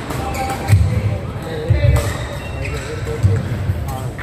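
Badminton rally: rackets smacking the shuttlecock in short sharp hits, and players' feet thudding on the court several times, with voices in the background.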